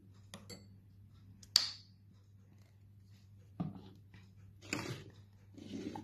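A metal spatula clinking against a small glass mixing bowl, with a few light knocks of bottles and jars being set down on a table. The sharpest clink, with a short ring, comes about one and a half seconds in.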